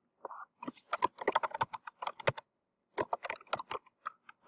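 Computer keyboard typing: a quick run of keystrokes, a pause of about half a second, then another shorter run.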